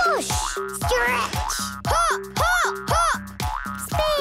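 Cartoon boing sound effects, each one gliding up and then down in pitch, about two a second, over bouncy children's theme music with a steady beat.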